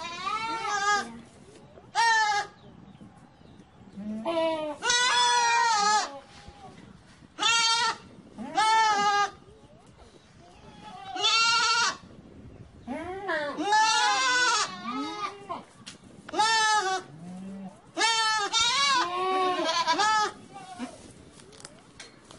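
Young goats bleating over and over, about nine quavering bleats coming irregularly, a few of them long and drawn out.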